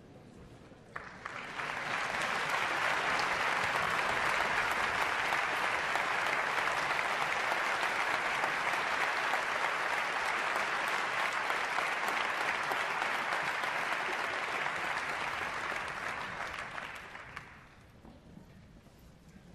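Concert-hall audience applauding: the clapping starts about a second in, holds steady, and dies away near the end.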